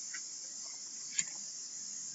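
Quiet background between sentences: a faint, steady high-pitched hiss, with one short click just after a second in.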